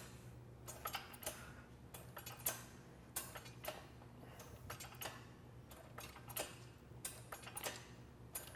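A hand-operated sheet-metal shrinker/stretcher working a thin steel strip: faint, light metallic clicks at about two to three a second as the jaws grip and release the metal with each stroke, stretching it into a curve.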